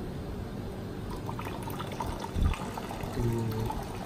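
Aquarium water poured from a clear plastic cup into a plastic bag holding a fish, done to acclimate the new fish to the tank's water. A dull low thump about halfway through.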